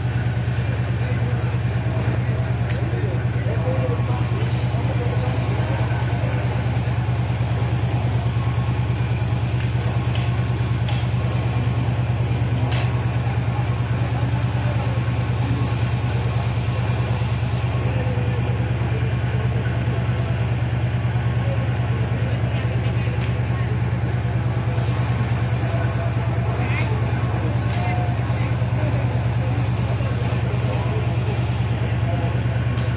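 A steady low hum at an even level throughout, with a few faint clicks.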